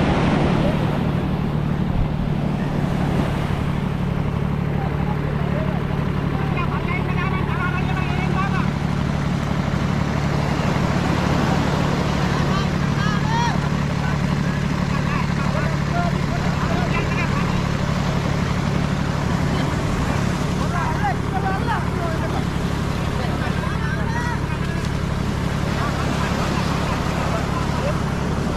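A tractor engine running steadily with a low drone, over surf breaking on the shore and scattered distant voices calling.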